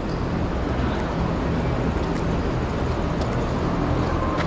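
A steady low mechanical hum over constant background noise, with no distinct event standing out.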